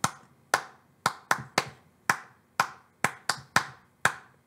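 A person's bare hands clapping in groups of five in place of the letters of a children's spelling song. Each group is three evenly spaced claps and then two quicker ones, and the groups repeat about every two seconds.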